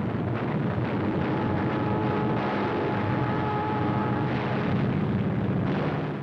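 Steady roar of aircraft engines in a dubbed newsreel battle soundtrack, with a faint held whine for a couple of seconds in the middle.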